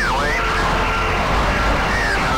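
Sikorsky/Erickson S-64F Skycrane helicopter's twin turboshaft engines and rotor running steadily in a hover, heard from inside the cockpit: a low drone with a steady high-pitched whine over it.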